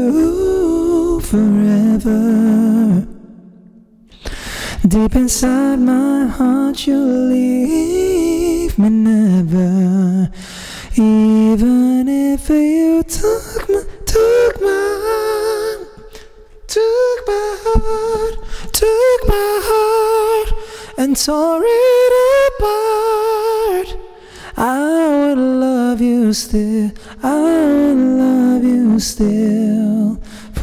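A man's singing voice run through a vocal harmony pedal, which adds parallel harmony voices to his notes. Long held notes with vibrato and pitch runs, with short breaks for breath.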